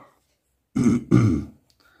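A person clearing their throat in two short bursts about a second in.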